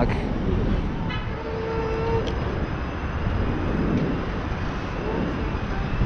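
City street traffic: a steady rumble of passing vehicles, with a short car horn toot about a second and a half in.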